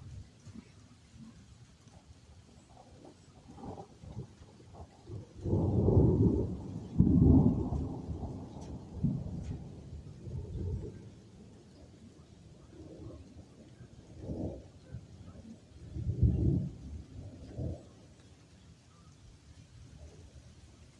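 Thunder: a long roll starts about five seconds in, loudest in two peaks, and rumbles on for several seconds before fading. Further rumbles follow in the second half, with light rain underneath.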